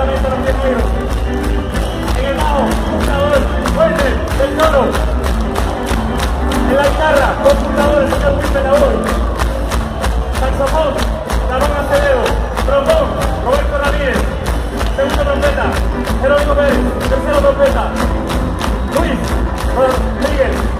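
Ska band playing live with a singer, guitars and drums over a steady fast beat and heavy bass.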